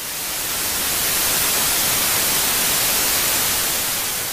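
TV static hiss used as an editing effect: an even white-noise rush that builds over the first second, holds, then begins to fade near the end.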